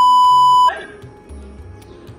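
A single steady, high-pitched censor bleep of under a second covering a swear word, cutting off sharply and leaving only faint background noise from the recording.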